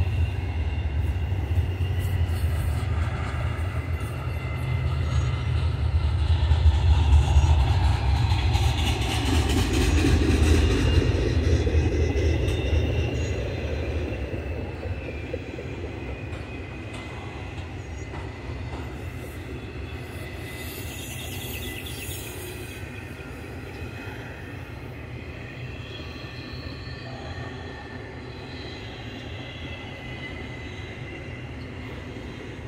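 Intermodal freight cars loaded with highway trailers rolling past on steel wheels: a continuous low rumble with high-pitched wheel squeal, loudest a quarter to a third of the way in and then fading away through the second half.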